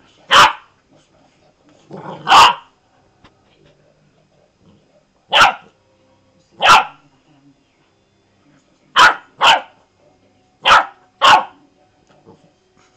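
Golden retriever puppy barking, eight short single barks at uneven spacing, the later ones in quick pairs.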